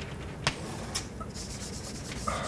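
Chalk writing on a blackboard: faint scratching with two sharp taps of the chalk against the board, about half a second and a second in.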